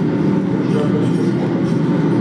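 A steady low mechanical drone, even in loudness throughout.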